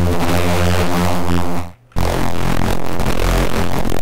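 A distorted neuro bass synth patch from Bitwig's Poly Grid, run through a waveshaper (Shaper) module. It plays two long held notes with a short break a little before two seconds in; the second note is lower and grittier.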